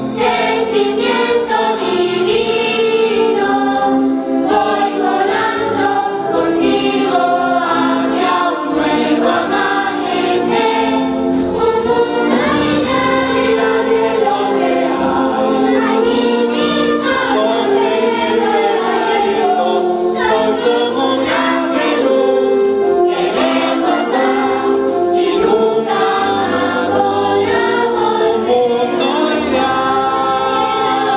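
A large choir of children and adults singing a song together, accompanied by a band.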